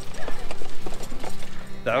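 A plastic garden dump cart with pneumatic wheels rattling and knocking as it is pulled over a gravel path, mixed with footsteps on the gravel. The knocks come irregularly, several a second.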